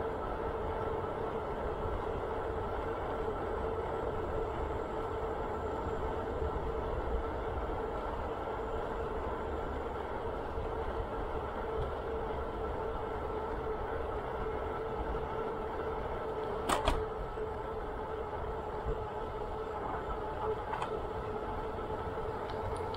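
Bicycle rolling along a paved trail at steady speed: a steady hum with a low rumble, and one sharp knock about 17 seconds in.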